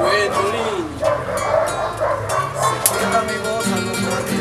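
Several acoustic guitars strumming chords in an instrumental passage between sung verses. A short wavering cry that rises and falls comes in the first second.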